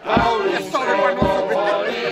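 Men and women singing a song together to a piano accordion, with a dull low thump about once a second keeping time.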